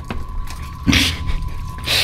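A man's short breathy chuckle about a second in, with a softer breath near the end, over a steady low hum and a thin high whine.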